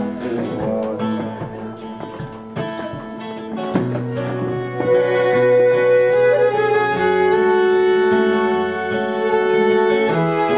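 Instrumental break of an Irish folk ballad: fiddle and button accordion play the melody over strummed acoustic guitar. About four seconds in the melody settles into long held notes and the playing grows louder.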